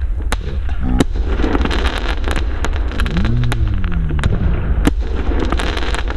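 Crackling stars from an Xplode 'Rap' category F2 firework battery bursting into crackle clouds: a dense run of rapid crackles, with a few sharper pops, over a steady low rumble.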